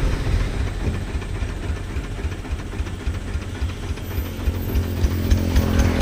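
An engine running steadily with a low, quickly pulsing rumble, under a steady hiss of wind or road noise.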